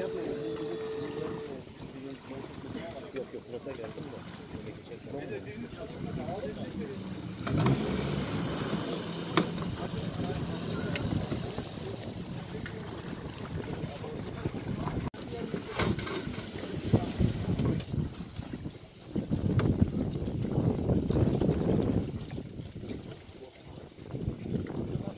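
Indistinct voices of several people talking and calling out, with wind on the microphone; the voices grow louder about a third of the way in and again near the end.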